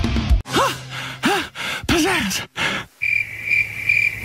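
A cartoon voice makes a few short vocal sounds that swoop up and down in pitch. Then, about three seconds in, a cricket sound effect starts chirring steadily, the cartoon gag for an audience that has fallen silent and is unimpressed.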